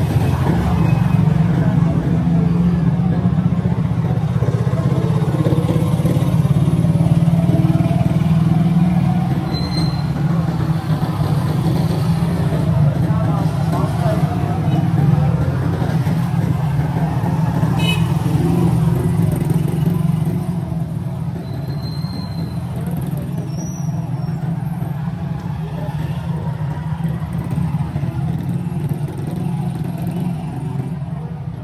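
Street traffic in a busy market lane: motorcycle and motor-rickshaw engines running close by in a steady low drone, easing off a little after about twenty seconds, with two short high beeps and people's voices in the background.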